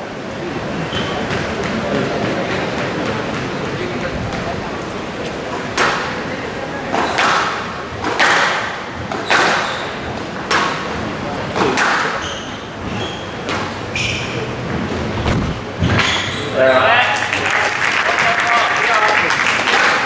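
Squash rally: a ball struck hard by rackets and hitting the court walls about once a second, each hit echoing in the hall. Near the end the hitting stops and voices rise.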